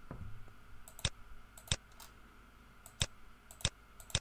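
Computer mouse button clicking while checkboxes are ticked: about five sharp single clicks, spaced half a second to a second apart.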